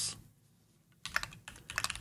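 Computer keyboard being typed on: a quick run of keystrokes through the second half, after a moment of quiet.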